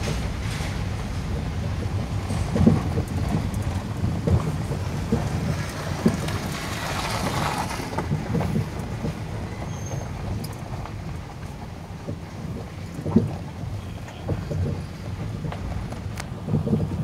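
Steady low rumble of a vehicle driving over a potholed, broken road, heard from inside, with sharp knocks and jolts as it drops through the holes, the loudest about 2.7 and 13 s in. Around 6 to 8 s in, a broader rushing swell as an oncoming bus passes.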